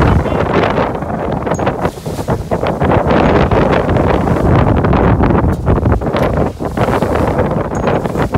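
Strong wind buffeting the microphone in gusts, over the rush of water along the hull of a sailing yacht moving fast under sail.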